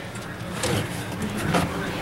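A few light knocks and handling noises from a plastic gallon jug of syrup being picked up, over a steady low hum.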